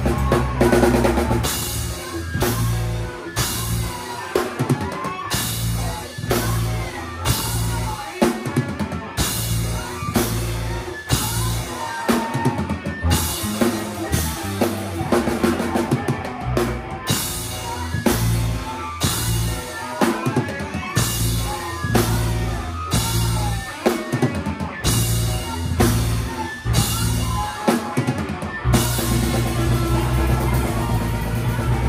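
A live band playing loud, heard close to the drum kit: bass drum and snare hits drive the beat, with Zildjian cymbals crashing in stretches of a second or two at a time, over sustained guitar notes.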